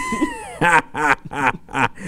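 A man laughing hard in a high pitch: a falling, squealing cry, then a quick run of about five short laughs.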